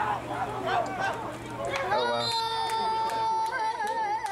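Voices shouting and cheering from the sideline and stands during a football play. About halfway through, one voice holds a long, high yell that wavers near the end.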